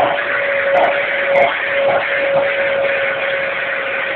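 Upright vacuum cleaner running with a steady motor whine and rushing air, the sound swelling briefly about twice a second.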